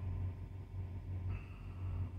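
Steady low hum in a truck's sleeper cab, with a faint thin high-pitched tone coming in past halfway.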